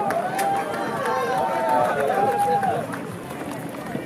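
A pack of runners going by: several voices calling and talking at once, no clear words, over the patter of running footsteps on the road.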